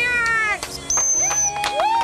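Bottlenose dolphins calling at the surface: a squeal that rises and falls, a held high whistle about a second in, then another rising squeal near the end.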